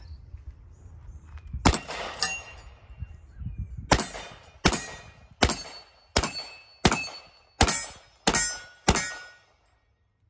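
Hi-Point .45 ACP semi-automatic carbine firing nine shots: a single shot, a pause of about two seconds, then eight in steady succession about 0.7 s apart, each echoing off the range. A faint ringing follows several shots. The gun feeds and cycles every round without a stoppage.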